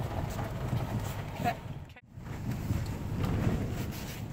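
Road and engine noise inside a car driving a rough, winding mountain road: a steady low rumble with scattered knocks. It drops out completely for an instant about halfway through.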